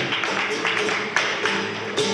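Live flamenco: the sharp strikes of a dancer's shoes on the stage floor and hand clapping, over guitar.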